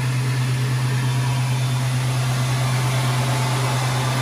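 Tormach PCNC 770 CNC mill running a program: a steady low hum with an even hiss over it.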